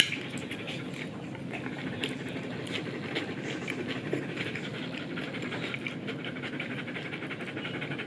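A German Shepherd dog panting steadily at close range.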